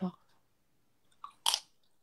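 A woman's voice ends a word, then about a second and a half in come two quick, sharp mouth noises close to the phone's microphone, the second much louder.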